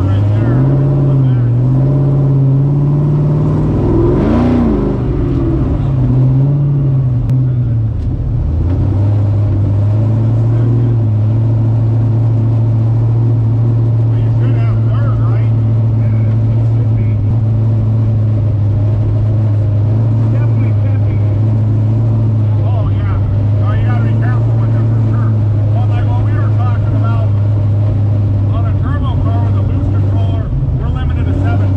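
Supercharged 427 cubic-inch LS V8 in a Chevy Vega, heard from inside the cabin while driving. The engine note rises and falls with a brief rev about four seconds in, then settles into a steady drone at a constant speed.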